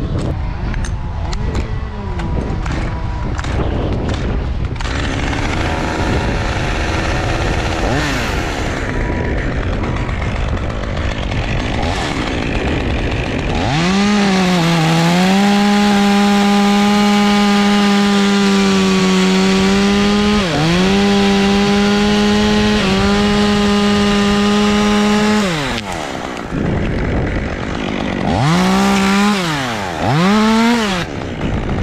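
Two-stroke top-handle chainsaw revved up and held at high speed for about twelve seconds, dipping briefly a few times, then revved again near the end. Before it comes up, wind noise and the clatter of climbing gear.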